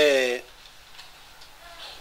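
A man's voice ends a word in the first half second, then a pause of quiet room tone in a large hall, with faint voices near the end.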